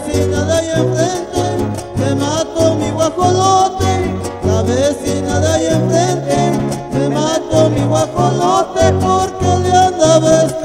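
Son huasteco trio playing an instrumental passage between sung verses of a huapango: a violin carries a sliding, ornamented melody over the steady strummed rhythm and bass notes of the jarana and huapanguera.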